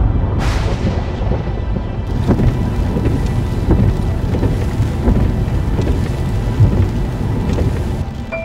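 Thunder rumbling heavily and continuously, with a sharp crack about half a second in, over the hiss of rain.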